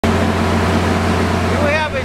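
Steady low hum of an engine-driven generator running, with a man starting to speak near the end.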